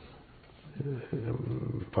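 A man's low, quiet, creaky voice drawn out in a hesitation murmur, starting about half a second in after a brief hush and running into speech again near the end.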